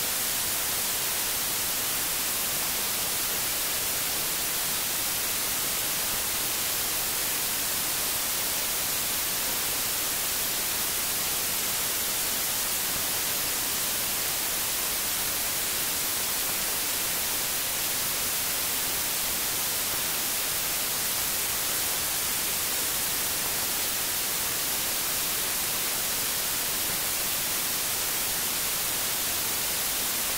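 Steady hiss of static, brighter toward the treble, with no change or other sound throughout.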